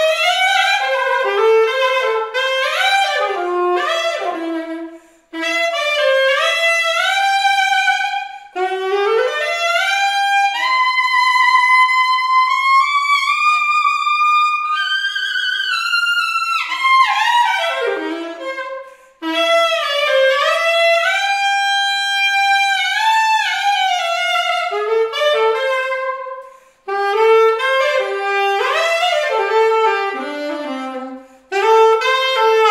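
Solo saxophone playing a flowing melody unaccompanied, in phrases broken by short breaths, with a slow climb through long held notes in the middle.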